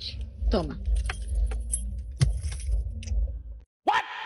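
Car cabin sound of a moving car: a steady low engine and road rumble with scattered clicks and rattles, and a brief voice sound about half a second in. It cuts off suddenly near the end.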